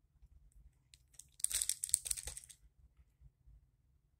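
A burst of crinkling rustle about one and a half seconds in, lasting about a second, after a few faint clicks. These are handling noises close to the phone's microphone.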